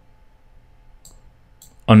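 Quiet room tone with a faint steady hum and a couple of faint computer mouse clicks.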